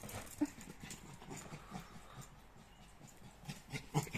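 Soft, irregular patter and rustle of footfalls as a small Lhasa Apso–Shih Tzu cross dog runs across paving and onto grass, with a sharper tap near the end.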